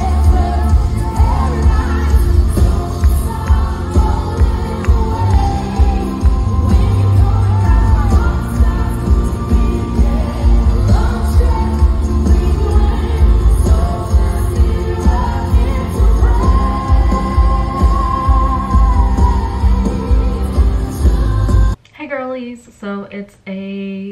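Church worship band playing live, with singing over a heavy bass and a steady beat. It cuts off abruptly near the end.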